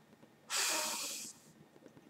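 A man's single audible breath close to the microphone, lasting under a second, taken in a pause between sentences.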